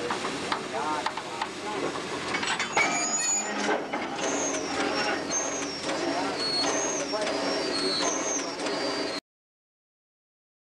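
Railway carriage rolling slowly past close by, with people's voices, a hiss about three seconds in and a run of short high-pitched squeals in the second half. The sound cuts off suddenly about nine seconds in.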